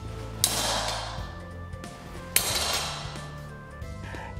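Melodic hip-hop background music, over which steel swords clash twice, about half a second in and again about two seconds later, each clash ringing away over about a second.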